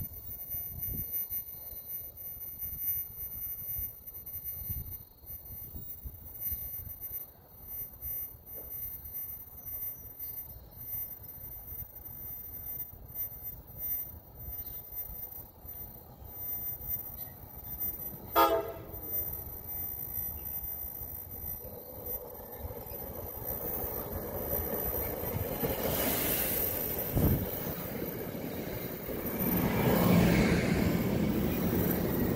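An NJ Transit commuter train approaching over gusty wind on the microphone, its rumble and rail hiss building steadily through the second half until the coaches pass close by at the end. A short horn toot comes about halfway through, and a single low thump shortly before the train arrives.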